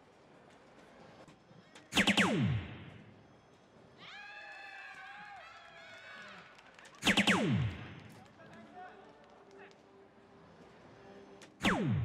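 DARTSLIVE electronic soft-tip dartboard playing its hit sound effect as darts land, a sharp start followed by a steep downward electronic sweep, heard three times, about two, seven and nearly twelve seconds in; the score falls with the first two, the first a triple 20. Between the first two hits a quieter held sound with several steady tones.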